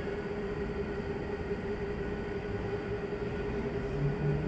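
Steady machine hum with one constant low tone over an even rumble, the background noise of the room.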